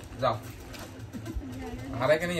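A pigeon cooing: one low, wavering call that starts about a second in and holds until near the end.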